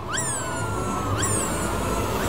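A loud rushing roar with a low rumble starts abruptly, with two high pitched calls over it, about a second apart, each sweeping sharply up and then sliding slowly down.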